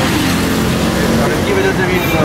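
Men talking over the low, steady rumble of the Mercedes C180 Kompressor's engine running with its bonnet open, amid street traffic.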